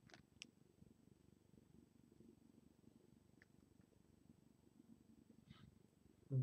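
Near silence: a faint low rumble, with a few faint light clicks near the start as a LEGO minifigure is set down on a paper magazine.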